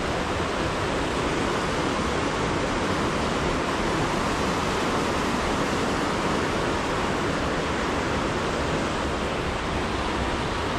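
Small mountain stream rushing over rocks and riffles, a steady wash of water noise.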